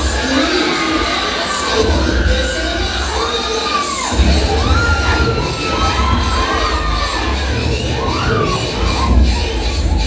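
A crowd of college students cheering and shouting, many high voices whooping and calling over one another in a steady loud din.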